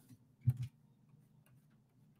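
A single short click about half a second in, with a brief low sound just after it, against otherwise near silence.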